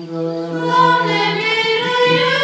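Choir of Orthodox nuns singing an unaccompanied liturgical chant, one low note held steadily beneath a moving melody that swells about half a second in.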